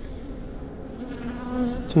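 Honeybees buzzing as a dense mass on an open brood frame, a steady hum with a clearer pitched buzz in the second half.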